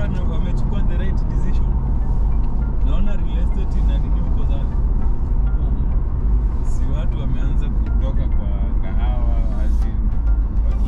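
Steady low rumble of a car travelling on the highway, with indistinct voices over it.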